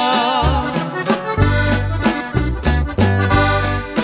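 Norteño band playing an instrumental passage with no singing: an accordion carries a wavering, ornamented melody over steady bass notes and a regular rhythmic pulse.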